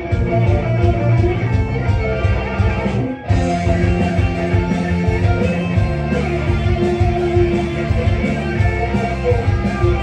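Instrumental rock: a live, amplified electric guitar playing over a steady, heavy low beat, with a momentary break about three seconds in before the music comes back.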